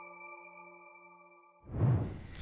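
The last chime notes of an electronic logo jingle ring on as several steady tones and fade away. Near the end a sudden burst of noise cuts in.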